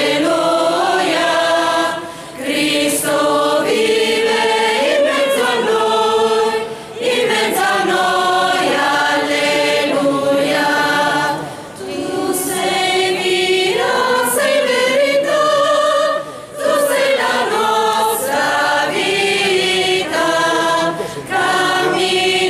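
Mixed choir of women's and men's voices singing a cappella under a conductor, in sustained phrases broken by short breaths about every four to five seconds.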